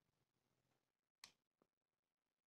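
Near silence, with one faint click a little over a second in: the iPhone 6s's vibration motor tapping on a 3D Touch press. The owner thinks the motor is faulty and will have to be replaced.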